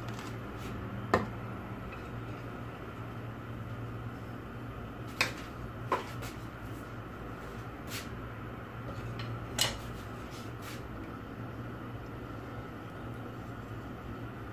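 Quiet kitchen background: a steady low hum with several sharp clicks and light knocks scattered through, the loudest about a second in, around five seconds in and near ten seconds.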